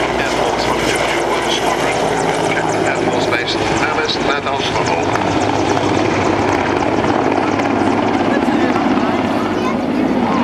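Mil Mi-24 Hind attack helicopter flying a display pass, its twin Isotov TV3-117 turboshaft engines and main rotor running steadily and loudly.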